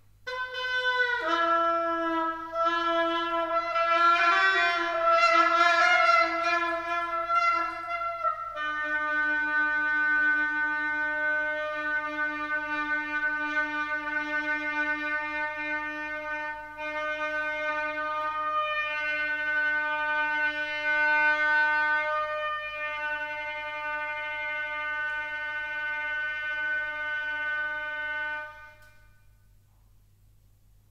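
Solo Rigoutat oboe playing a phrase of moving notes, then holding one long low note for about twenty seconds that stops near the end.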